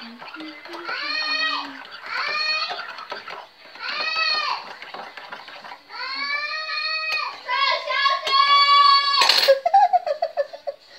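A high voice singing in repeated rising-and-falling phrases, each about a second long, with a loud clatter about nine seconds in.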